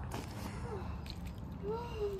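Bare feet stepping on a wet plastic tarp in shallow water, with faint crinkling and squishing over a steady low rumble; a child exclaims "whoa" near the end.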